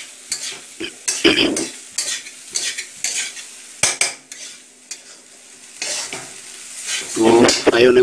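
Metal spoon stirring and scraping rice fried with potato and onion in a steel kadhai, in irregular scrapes and knocks against the pan, over a faint frying sizzle.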